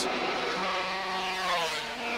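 A 250cc two-stroke racing motorcycle engine running hard as the bike approaches, a steady note that holds a near-constant pitch.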